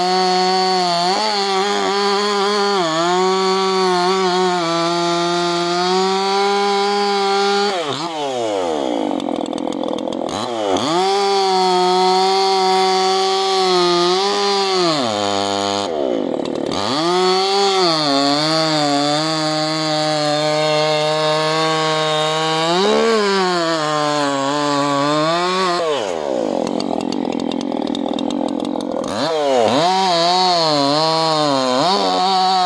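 Maruyama 5100 two-stroke chainsaw (3.8 hp) running at high revs while cutting through thick firewood logs. Its engine pitch drops steeply about eight seconds in and climbs back, dips briefly again around the middle, and sags lower for a few seconds near the end before revving back up.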